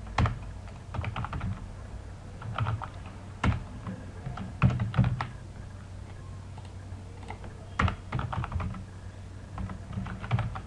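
Computer keyboard typing in short bursts of keystrokes with pauses between them, over a low steady hum.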